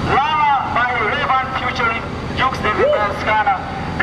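Loud, excited shouting voices calling out, with no clear words, over a steady low rumble of background noise.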